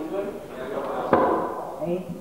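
Indistinct voices in a room, with a single sharp knock about a second in.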